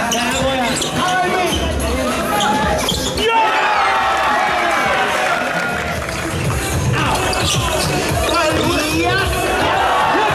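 A basketball bouncing as players dribble, under voices and background music.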